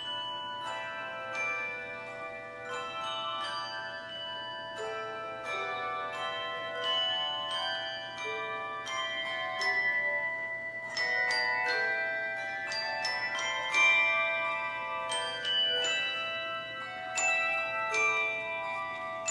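Handbell choir ringing a piece: many struck bell tones, often several together, each ringing on after the strike. The playing grows somewhat louder about halfway through.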